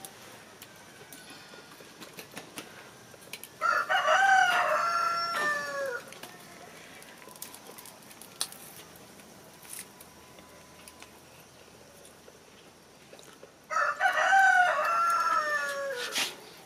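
A rooster crowing twice, each crow about two seconds long and ending on a falling note, the second about ten seconds after the first.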